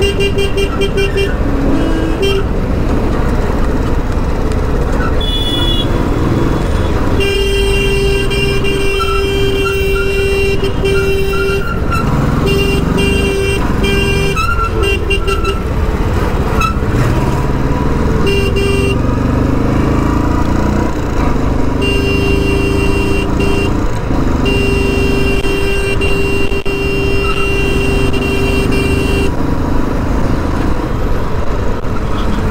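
Royal Enfield Standard 350's single-cylinder engine accelerating again and again while riding, pulling cleanly with no misfire, which the rider puts down to a new fuel tank and fuel pump. Over the riding noise, vehicle horns honk in several long, steady blasts.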